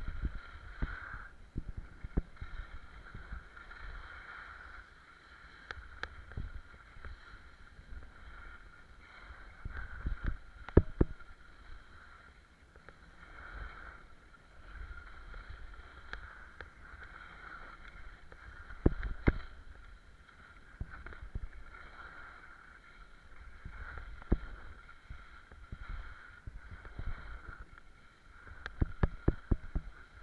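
Skis sliding and scraping over chopped-up piste snow on a downhill run: a continuous swishing hiss with low rumbling swells. A few sharp knocks break through, the loudest about eleven and nineteen seconds in.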